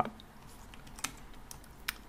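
A few quiet, sharp clicks of a computer mouse and keyboard at a desk, starting about a second in, the loudest just before the end.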